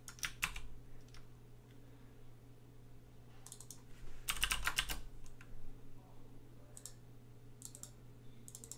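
Typing on a computer keyboard in short, irregular bursts of key clicks, with the longest and loudest flurry a little past the middle.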